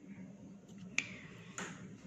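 A single sharp click about a second in, then a short rustle, over a faint steady hum: a pen being handled over a paper page.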